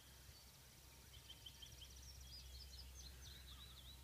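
Near silence with faint birdsong: a few short trills, then a string of warbling notes from about two seconds in. A faint, fast, high pulsing sound runs under the first half.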